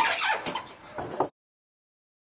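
A person's cry, sliding down in pitch, with a shorter sound just after a second in; then the audio cuts off abruptly.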